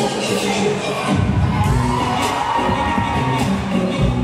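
Audience cheering and shouting over loud dance music. The music's bass drops out and comes back in about a second in.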